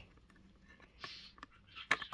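Plastic battery cover of a blood pressure monitor being handled over its battery compartment: a brief scrape about a second in, then a sharp plastic click near the end.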